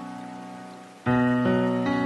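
Slow, soft solo piano music: a held chord fades away, then a new chord is struck about a second in and rings on, with another note or two added soon after. A soft, steady hiss lies underneath.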